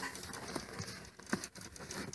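Faint rustling with a few soft clicks and knocks, like handling noise.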